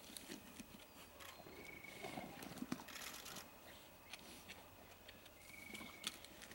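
Spotted hyenas feeding on a carcass: faint scattered chewing, tearing and crunching sounds, busiest about two to three seconds in. A short thin high note sounds twice, about a second and a half in and again near the end.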